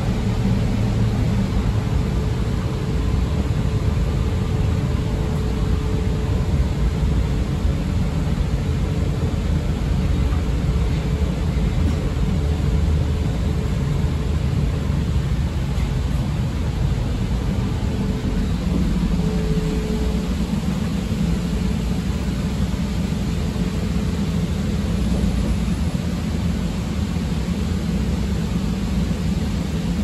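Interior of a CTA 5000-series rapid-transit car under way: a steady rumble of wheels on rail and running noise, with a thin motor hum that fades about halfway through as the train nears the next station.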